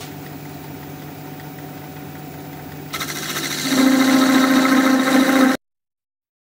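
Jet 1840 wood lathe running steadily, then from about three seconds in a parting tool cuts into the spinning spindle blank, a louder cutting noise with a steady buzzing pitch. The sound cuts off suddenly near the end.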